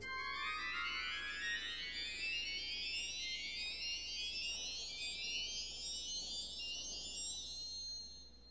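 A three-rank Scharf Zimbel mixture stop on a pipe organ, played alone in a steadily rising scale. Only thin, very high pipe pitches sound, with no foundation tone beneath them.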